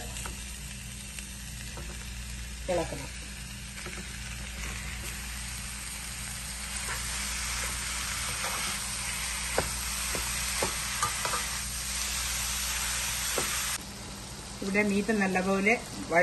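Ground beef sizzling as it fries in a non-stick pan with onion and spice masala, being stirred and broken up with a slotted spatula, with a few light spatula taps against the pan in the second half. The sizzle stops suddenly near the end.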